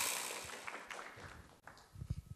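A quiz-show sound effect marking a correct answer, dying away over about a second and a half, followed by a few faint taps near the end.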